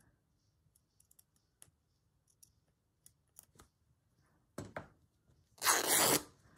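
A few faint, scattered clicks of handling, then rustling of cotton calico fabric near the end, a short burst followed by a longer, louder one as the sheet is lifted and moved over the journal pages.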